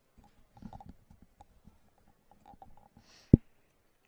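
Faint low knocks and rustling, then one sharp, loud thump about three seconds in.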